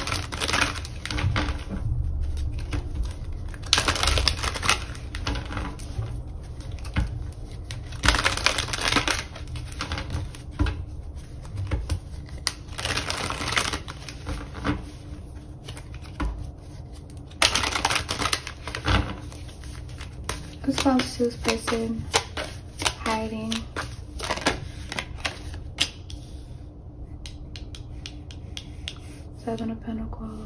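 A deck of tarot cards being shuffled by hand in several rapid, clicking bursts a few seconds apart.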